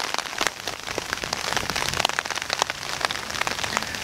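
Rain falling steadily, with many individual drops striking sharply all through.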